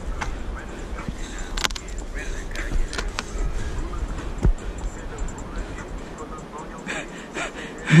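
Footsteps on a dirt forest trail with scattered knocks and a low rumble from a body-worn action camera carried up the path, and a laugh right at the end.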